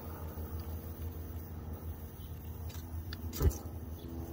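Coleman Peak 1 liquid-fuel stove hissing faintly under pump pressure. About three and a half seconds in, a ferro rod is struck and the burner lights with one sharp burst on the first strike.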